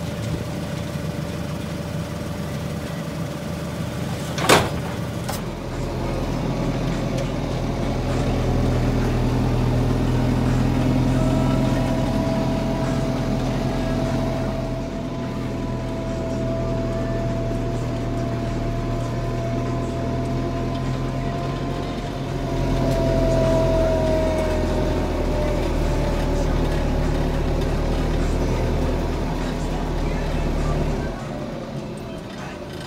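Fendt 311 Vario tractor running, heard from inside the cab. There is a sharp click about four and a half seconds in, then the engine pulls harder, with a steady high whine from about eleven to twenty-four seconds.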